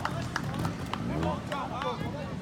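Spectators talking, over a trials motorcycle engine running at low revs, with a few sharp clicks.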